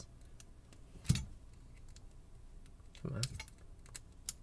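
Small clicks of a tool working at the C-clip on the back of a euro cylinder lock's plug, with one sharp click about a second in, as the clip is being pried off.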